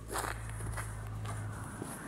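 Footsteps crunching on packed snow and ice, a few steps about half a second apart, over a steady low rumble.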